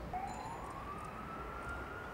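A siren wailing: one slow rising sweep that climbs for about a second and a half, then holds its pitch.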